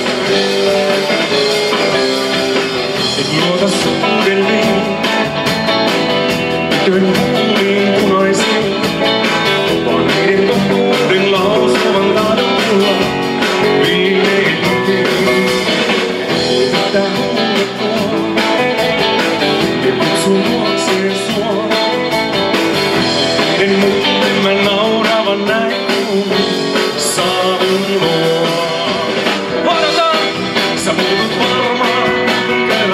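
A live rock-and-roll band playing, led by electric guitar, with a man singing lead vocals into a microphone over it.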